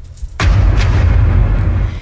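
A radio news transition sound effect: a sudden deep boom about half a second in, followed by a low rumble that lasts about a second and a half.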